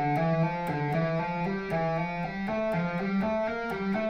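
Electric guitar played legato with fretting-hand hammer-ons only, in a steady run of single notes at about four a second. It follows a repeating one-two-four finger pattern across the strings.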